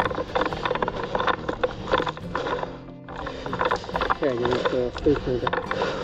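A quick run of clicks and knocks for about three seconds, then an abrupt break, after which people are talking, with music underneath.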